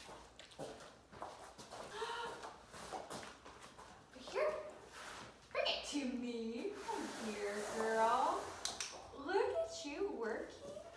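A Newfoundland dog vocalizing in drawn-out, wavering howl-like calls, the longest held for about three seconds in the second half.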